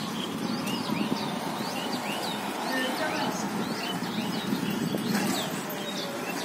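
Street ambience heard from above: a steady murmur of distant voices and street noise, with short high chirps repeating two or three times a second, typical of small birds.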